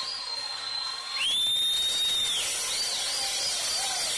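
High-pitched whistling: one long held whistle note, then a second held note sliding up into place, then a quick warbling run of short whistles near the end, over a steady hiss.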